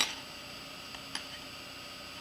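Knitting needles clicking lightly as stitches are knitted: a sharp tick at the start and a fainter one about a second in, over a faint steady hum.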